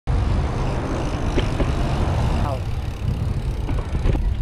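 Wind buffeting the microphone of a camera riding along on a moving bicycle, a steady low rumble with road noise under it.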